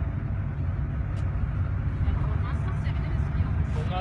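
Steady low rumble of a minibus's engine and road noise, heard from inside the cabin while it drives, under faint talk among the passengers.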